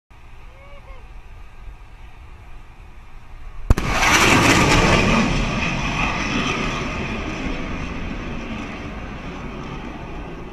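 Jet aircraft launching from an aircraft carrier's catapult: a sharp crack a little under four seconds in, then a loud jet engine roar that comes on suddenly and slowly fades as the aircraft moves away.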